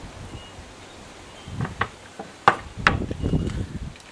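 Air rifles being handled as one is put down and another picked up: bumping and rustling, with a few sharp knocks and clicks of wood and metal about two to three seconds in.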